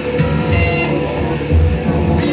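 A live rock band playing: electric guitar over bass and drums, with heavy low hits about a second apart.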